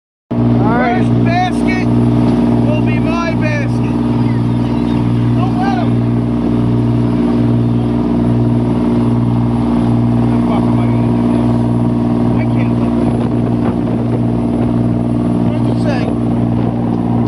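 Fishing boat's engine running steadily under way, a low drone that throbs about once a second, over the rush of the wake.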